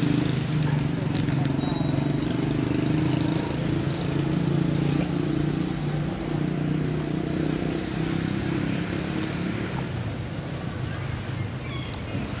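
A motor vehicle's engine running steadily, a low drone that fades away about ten seconds in.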